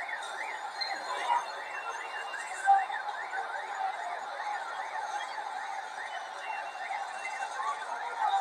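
An electronic siren warbling rapidly up and down, about three sweeps a second, over steady street and crowd noise.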